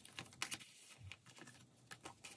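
Faint, irregular small clicks and taps from photocards and plastic binder pages being handled.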